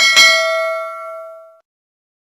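A notification-bell 'ding' sound effect for a subscribe button. It is struck twice in quick succession, then rings with several clear tones and fades out within about a second and a half.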